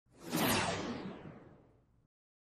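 A single whoosh sound effect that swells quickly and fades away over about a second, its hiss dulling as it dies.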